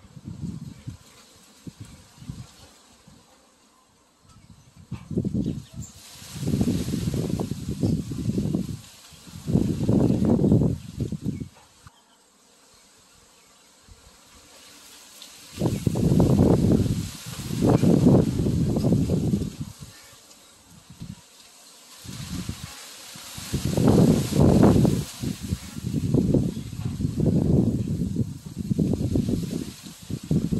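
Wind buffeting the microphone in irregular gusts, a low rumble that swells and drops every few seconds, over a steady hiss of rustling leaves.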